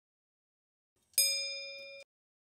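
A single bell ding, struck about a second in and ringing down steadily until it cuts off abruptly at the end.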